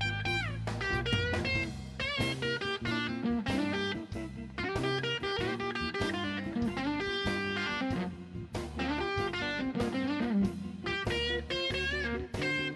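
Live blues band playing an instrumental break: a Fender Stratocaster electric guitar solos in bent notes and vibrato over bass guitar and a drum kit.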